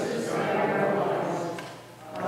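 A woman's voice reciting a liturgical text aloud in a reverberant church, fading out near the end.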